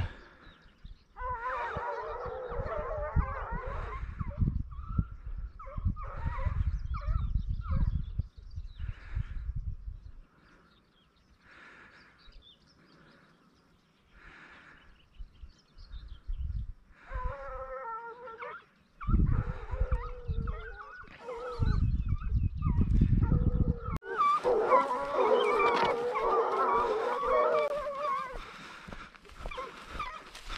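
A pack of Ariégeois scent hounds baying on the trail, several voices giving tongue together in bouts with short lulls, loudest near the end.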